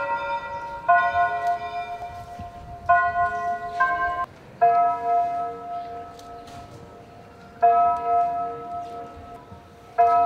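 Bells striking and ringing out: a few strokes on bells of different pitch in the first few seconds, then single strokes of one bell about three seconds apart, each left to fade.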